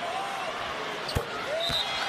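Basketball bouncing on the hardwood court after a made free throw drops through the net: one sharp bounce about a second in, then a softer second bounce, over arena crowd murmur.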